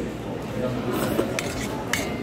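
Metal utensils clinking against stainless steel bowls, a few sharp clinks with short ringing in the second half.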